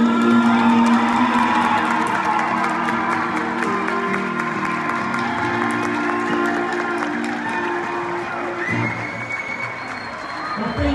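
Live band of saxophones and guitar holding long notes that slowly fade, while an audience applauds and cheers.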